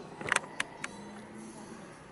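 A few sharp knocks: a tight cluster about a third of a second in, then two single ones about a quarter second apart.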